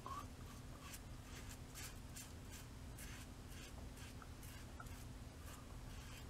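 Supply SE single-edge safety razor scraping through lathered stubble on the cheek in short repeated strokes, about two or three a second; faint, and not very noisy.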